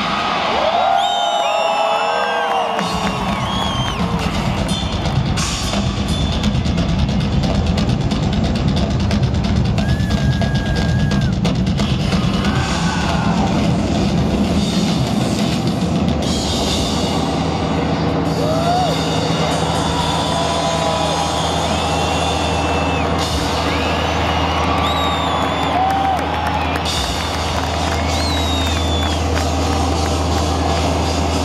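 Live rock drum solo on a full drum kit, played loud through an arena PA and recorded from the crowd. Voices shout over it throughout, and a low steady drone comes in about halfway through and holds.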